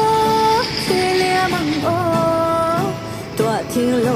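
A song playing: a singing voice holding long notes, each bending at its end, over instrumental accompaniment.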